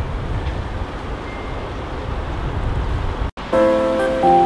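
Steady outdoor background noise with a low rumble, cutting out abruptly a little after three seconds in; background music with sustained held chords then begins.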